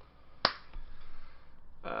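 A single sharp snap about half a second in, against quiet room tone.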